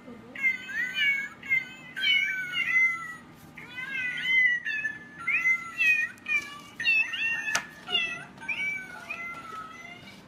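Musical greeting card playing a tune made of recorded cat meows: a quick run of short, high meows, several a second, going on without pause. It grows fainter near the end.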